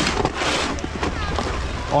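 Wind buffeting an action camera's microphone, a steady low rumble with hiss. A man's voice starts right at the end.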